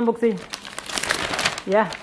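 A brown paper takeaway bag crinkling and rustling as it is pulled open and a hand rummages inside, a dense crackle for about a second between bits of speech.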